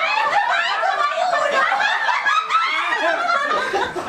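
A group of people laughing together, several voices overlapping in snickers and chuckles, with some talk mixed in.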